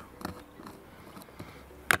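Small screwdriver working the screw terminals of a circuit board, faint small ticks and scrapes as the terminal screws are loosened, then a single sharp click near the end.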